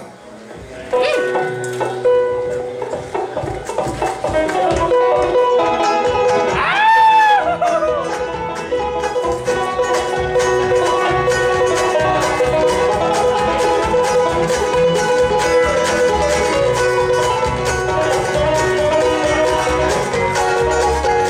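Live bluegrass band starting a tune: five-string banjo and mandolin picking over bass, coming in about a second in after a short pause. A short rising-then-falling tone sounds over the music about seven seconds in.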